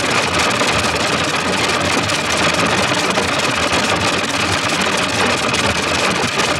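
Loud, steady, harsh noise with a rough rumbling texture and no clear notes: heavily distorted, effect-processed audio.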